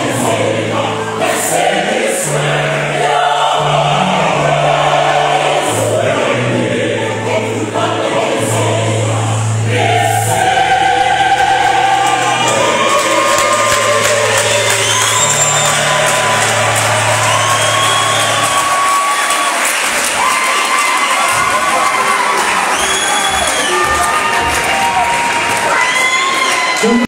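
Large mixed choir singing sustained chords, the low voices holding long notes that shift in pitch, until they stop about eighteen seconds in. From about halfway on, an audience cheers over the singing with many shrill rising-and-falling calls, and the cheering carries on after the choir stops.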